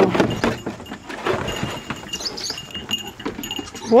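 Water from a garden hose running and splashing into a plastic kiddie pool, loudest in the first second, with faint high animal calls about two seconds in.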